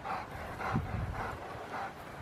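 Rottweiler panting, a soft, even rhythm of about three breaths a second.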